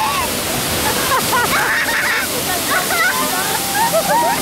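A staged flash flood on a theme-park tram ride: a great volume of water pouring down the rocks beside the open tram, a steady loud rush, with riders' voices rising over it.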